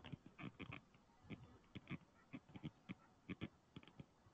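Faint, irregular taps and clicks of a stylus on a tablet screen as a word is handwritten, about a dozen short ticks over four seconds.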